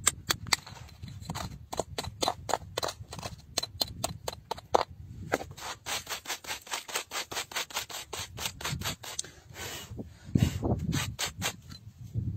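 A metal chisel scraping and chipping at a stone block in short, sharp, repeated strokes, quickening to about five a second about halfway through. A louder, duller rumble of handling comes near the end.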